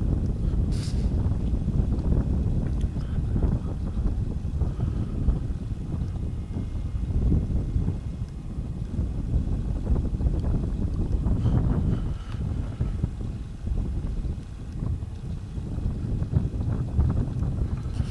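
A light breeze buffeting the camera microphone: a low, gusty rumble that keeps rising and falling.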